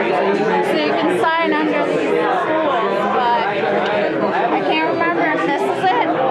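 Chatter of a crowd in a busy bar: many voices talking over one another, with no single voice standing out.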